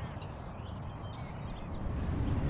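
Outdoor ambience: a steady low rumble of wind and distant traffic, with a few faint, brief bird chirps.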